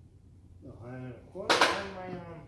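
A man's voice: a short voiced sound, then a sudden loud burst about a second and a half in, fading with the voice.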